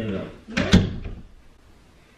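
Interior door being handled, with one sharp click about three quarters of a second in.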